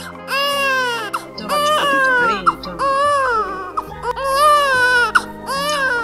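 A baby crying in about five long wails in a row, each rising and falling in pitch, over background music.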